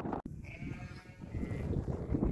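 A sheep bleating once, a long quavering call.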